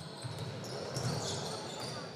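Ambient sound of an indoor basketball hall, a steady background with people talking faintly, fading out near the end.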